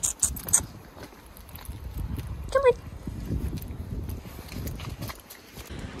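Footsteps of a person walking briskly with a dog on a footpath, under a steady low rumble on the handheld phone's microphone. A few sharp clicks come near the start, and a short rising squeak about two and a half seconds in.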